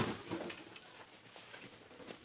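Faint shuffling and rustling of students dropping down beside their classroom desks, dying away to a quiet room about half a second in.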